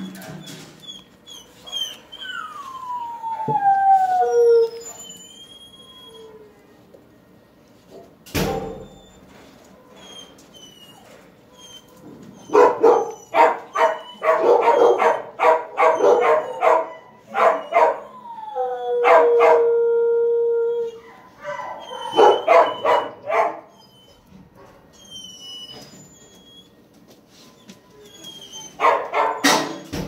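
Dogs in a shelter kennel barking and howling in bouts: a long falling howl early on, then dense runs of barks in the middle and near the end, with quieter gaps between. A single sharp knock about eight seconds in.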